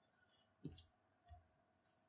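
Near silence, broken by a few faint clicks: a plastic highlighter being set down on paper, the first about two-thirds of a second in and a softer one a little after a second.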